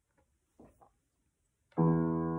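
Near quiet, then about three-quarters of the way in a piano chord is struck and held, ringing steadily: the first chord of the accompaniment to the song she is about to sing.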